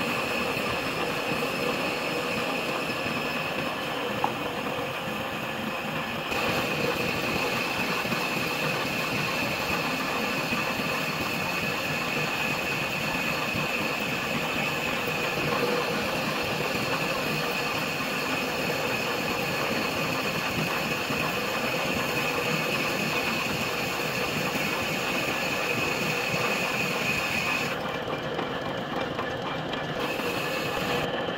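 Metal lathe running, its boring tool cutting the inner bore of a pillow block housing: a steady machine noise with a constant high whine.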